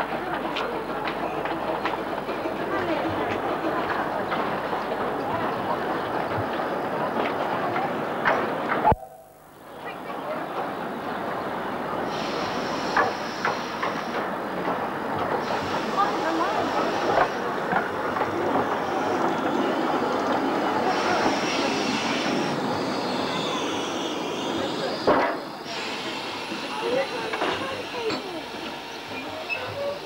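A 15-inch gauge miniature steam train running along a station platform, with many people chattering. The sound cuts out briefly about nine seconds in. In the second half come several high-pitched sounds, each a second or two long.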